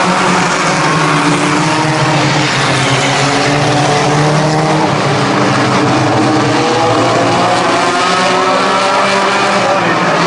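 A pack of front-wheel-drive dirt-track race cars racing, several engines running hard at once, their overlapping pitches rising and falling a little as the cars pass and go round.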